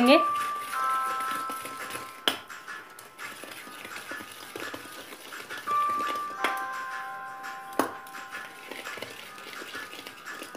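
A steel mixing bowl knocked a few times while cake batter is mixed in it, each knock leaving a ringing metallic tone that fades over a second or two.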